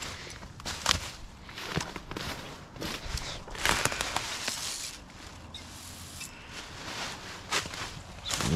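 Footsteps crunching and rustling through deep dry fallen oak leaves, irregular and uneven, heaviest a few seconds in.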